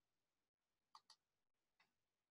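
Near silence, with two or three faint short ticks about a second in and again near the end.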